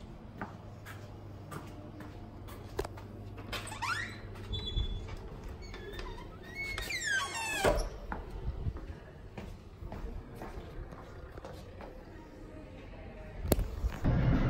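A door pushed open, squeaking around four seconds in and again, longer, near seven seconds, amid light knocks. A low hum stops about halfway through.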